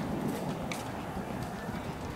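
Quiet outdoor ambience of a cobbled street, with a few faint, hard footsteps on the stone paving.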